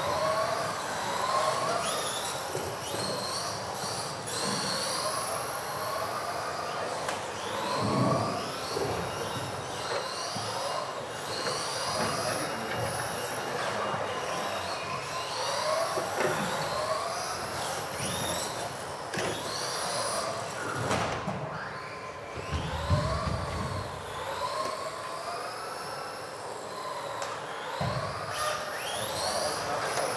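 Several 2WD RC cars racing, their electric motors whining, with the pitch rising and falling as the cars speed up and slow down through the corners. A few low thumps come in between, the loudest a little past the middle.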